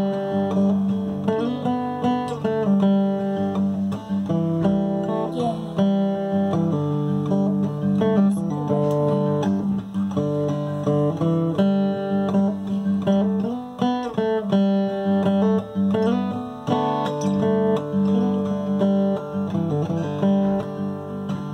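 Acoustic guitar played clawhammer (frailing) style in open Double G tuning, DGDGAD: a rhythmic picked-and-brushed pattern with a steady low note ringing under the changing melody notes.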